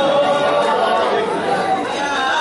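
Voices of a gathering talking over one another, with a man's voice over a microphone.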